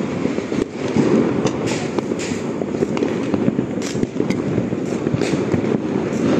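Many firecrackers bursting at once in a dense, continuous crackle, with louder sharp bangs standing out about once a second.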